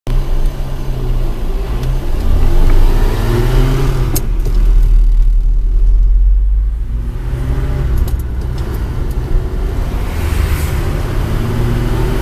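Volvo C300-series 6x6 military truck's straight-six petrol engine, heard from inside the cab as the truck pulls away through the gears: the engine note rises, drops at a gear change and rises again several times, with a couple of sharp clicks along the way.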